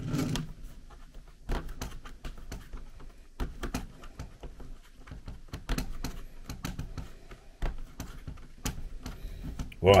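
Nylon hose clamp being tightened by hand with its wing nut: a run of small, irregular clicks and ticks as the nut is turned and the band tightens around the pole.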